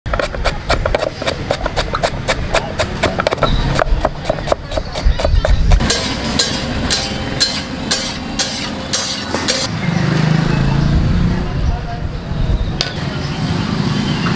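A large knife chopping cabbage on a wooden board, in quick even strokes about four a second. About six seconds in, this gives way to a metal spatula knocking and scraping on a large iron tawa as pav bhaji is stirred.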